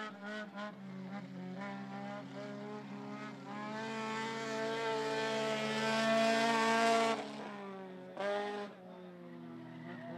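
Dirt-track stock cars racing, their engines running hard at speed. The engines grow louder as the cars come past close by, then the sound drops away suddenly about seven seconds in, with one more brief swell about a second later.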